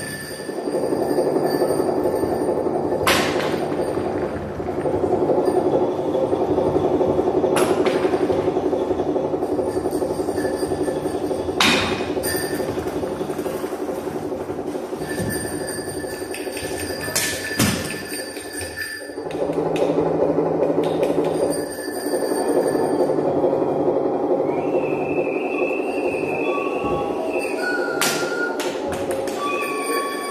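Live experimental electronic music played from a table of equipment: a dense, steady drone with sharp clicks cutting through it now and then. It thins out briefly twice, and short high whistling tones come in over it near the end.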